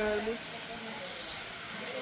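Low background noise as a voice trails off, with one short, high hiss just over a second in.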